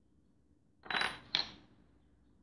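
A small metal piping tip set down, clinking twice about half a second apart with a faint metallic ring.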